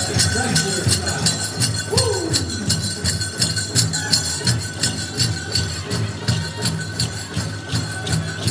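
Powwow drum group playing a grand entry song with a steady, even beat on the big drum. The dancers' bells and metal jingles shake in time over it, and a voice slides down in pitch about two seconds in.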